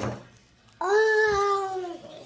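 A toddler's long, held vocal note, starting suddenly about a second in and sliding slightly down in pitch, made while eating. A short wet smack of the mouth comes at the very start.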